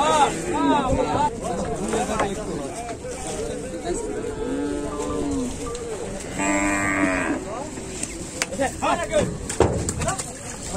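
Cattle mooing again and again, calls overlapping and rising and falling in pitch, with one long steady moo about six and a half seconds in. A sharp knock near the end.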